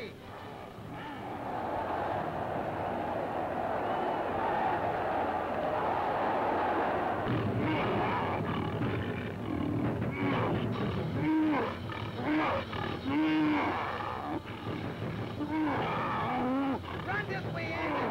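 Cartoon fight sound effects. First a steady rushing, scuffling noise for several seconds, then a lion roaring and growling again and again over a low rumble, mixed with short rising-and-falling vocal cries.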